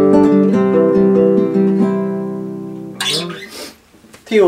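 Nylon-string classical guitar fingerpicked in a clear, classical-sounding piece, the final notes ringing and fading steadily over about three seconds. A short burst of noise follows near the end as the playing stops.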